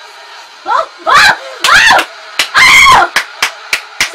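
Women squealing and screaming with excitement: several loud shrieks that rise and fall in pitch, followed by a few sharp hand claps near the end.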